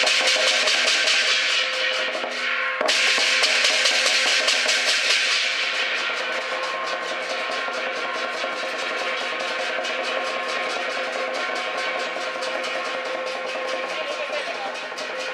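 Lion dance percussion: a rapid, continuous roll on the lion drum with clashing cymbals and a ringing gong. There is a sudden break about three seconds in, then it picks up again, and the cymbals thin out from about halfway.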